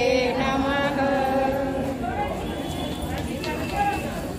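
Women's voices chanting a devotional hymn in unison on held notes. About halfway through the chant fades into mixed talking voices.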